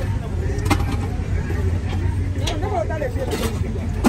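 Street ambience: a steady low rumble of road vehicles with faint voices speaking in the background.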